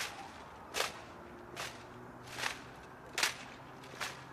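Rifle drill by a Marine drill team: a sharp slap of gloved hands and rifles about every 0.8 seconds, in an even cadence.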